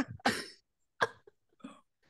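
A woman's short cough, clearing her throat at the tail of a laugh, then a sharp click about a second in and a faint brief sound after it.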